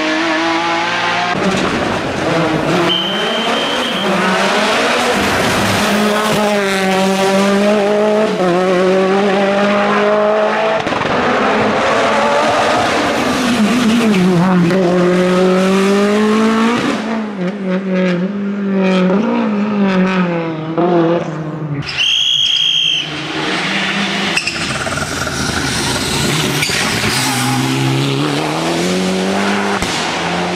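Racing car engines at full throttle on a hill-climb course. The revs climb and drop again and again through gear changes as the cars pass one after another. About two-thirds of the way through there is a brief high squeal of tyres.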